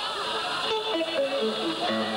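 A guitar picking out a short run of single notes, each held for a moment, stepping up and down in pitch.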